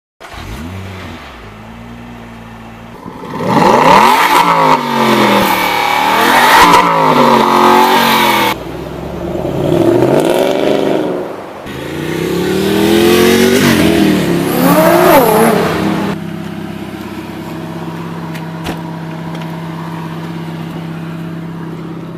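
Sports car engine revved hard in three bursts, its pitch sweeping up and falling back each time, then settling into a steady idle for the last several seconds.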